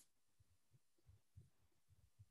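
Near silence: faint room tone with a few soft, irregular low thumps.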